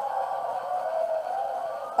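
A sound effect played through a phone's small speaker: thin and tinny, with a wavering pitch, carrying on steadily.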